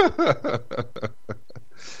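A man laughing: a run of short chuckles that grow fainter and die away about a second and a half in.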